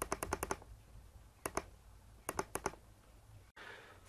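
Computer mouse clicking in short runs: about five quick clicks at the start, a pair about a second and a half in, and another run of about four a little after two seconds.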